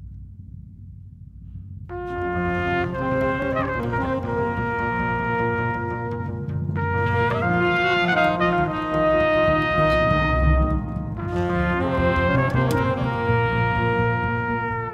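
Instrumental jazz from a quintet. A low rumble opens it, then about two seconds in trumpet and tenor saxophone enter together, playing a slow melody in long held notes in three phrases over double bass and drums.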